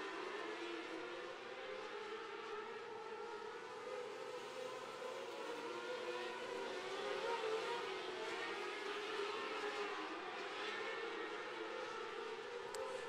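A pack of 600cc outlaw micro sprint cars racing on a dirt oval. Their many engines blend into a steady, fairly faint high drone whose pitches waver up and down as the cars lift and accelerate through the turns.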